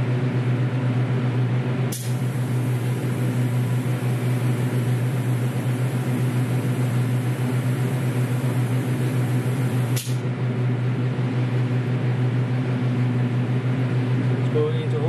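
Aerosol paint can sprayed by a robot arm: a hiss that starts with a click about two seconds in and cuts off with a click about eight seconds later. Under it the spray booth's extraction fan runs with a steady low hum.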